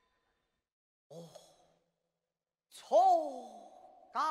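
A male Cantonese opera performer's drawn-out stage exclamation, loud, rising briefly and then sliding down in pitch, near the end. It follows a short soft vocal sound about a second in.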